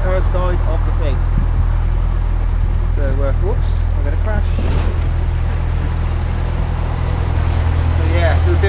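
A narrowboat's diesel engine running steadily under way, a low even hum with no change in speed.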